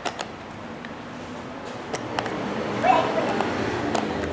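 A few sharp plastic clicks and taps as the grey plastic case of a Sanwa YX360TRF analog multitester is handled and its hinged cover folded, over steady room noise with faint voices.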